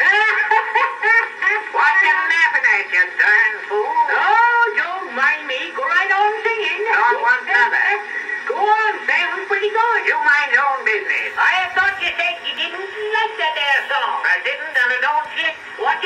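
Men's voices in a rustic comedy dialogue, talking with snickering laughter, played from an early acoustic phonograph record: a thin, narrow sound with no bass.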